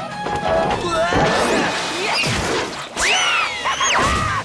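Cartoon soundtrack of music with comic sound effects: a crash about two seconds in, then a high whistling glide that rises and falls near the end.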